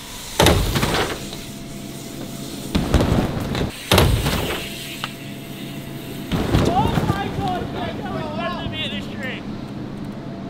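Rushing noise and several heavy knocks and thumps as a BMX bike runs the ramp, jumps and drops into an inflatable airbag. From about six and a half seconds in, excited wordless shouting and whooping.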